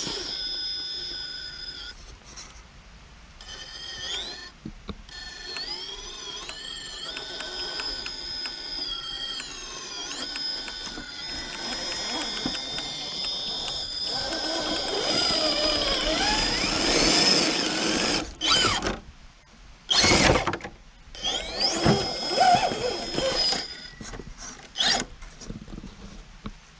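Small RC rock crawler's drivetrain, a 2000kv brushless motor through a Stealth X transmission, whining as it climbs, its pitch rising and falling with the throttle, with fine ticking from the gears and tyres on rock. Several louder bursts of scraping and knocking come about two-thirds in.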